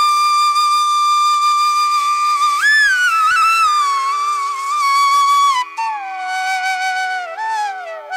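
Background music: a flute melody of long held notes that bend in pitch, over a steady drone.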